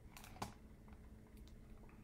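A few faint computer keyboard clicks against near-silent room tone, the clearest about half a second in.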